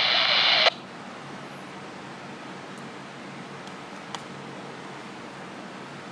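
Scanner radio hiss from a railroad defect detector's transmission, cutting off suddenly less than a second in. After it comes a faint steady background with one small click a little past the middle.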